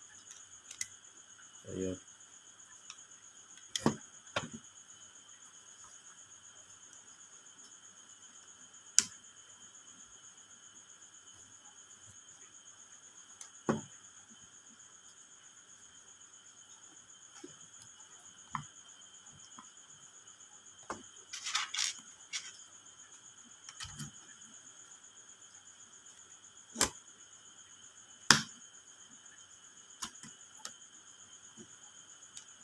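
Sharp plastic and metal clicks and knocks, about a dozen spaced irregularly with a quick cluster a little past the middle, from handling a miniature circuit breaker and the mechanism of an automatic transfer switch. Under them runs a steady, faint, high-pitched chirring of crickets.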